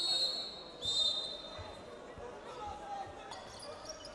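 Basketball court sound: the ball bouncing on the hardwood floor, with two high, steady squeals one after the other in the first two seconds.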